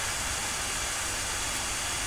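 A steady, even hiss with nothing else in it: constant background noise.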